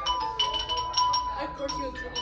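Mallet percussion instrument being played: a run of quick, irregular struck notes, several of them high, each ringing on briefly, with voices behind.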